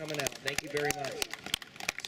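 Scattered hand clapping from a small crowd: sparse, irregular claps with voices talking underneath.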